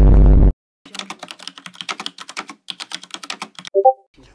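A loud, distorted blast that cuts off suddenly about half a second in, then a quick run of computer keyboard key clicks for about three seconds as a short message is typed. A brief electronic blip sounds near the end.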